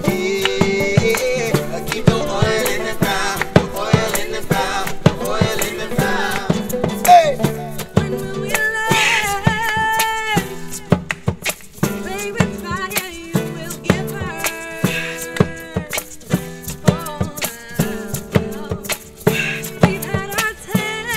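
Acoustic folk band playing: strummed acoustic guitars, banjo, fiddle and a djembe keeping a steady beat, with voices singing at times over the top.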